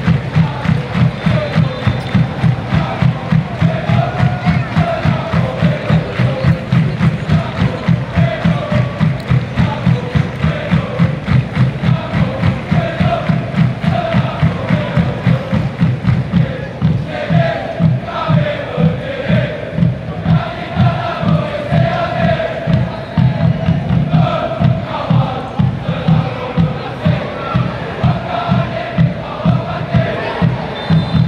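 Large section of Selangor FC ultras singing a chant in unison over a steady, pounding drum beat of about two to three beats a second.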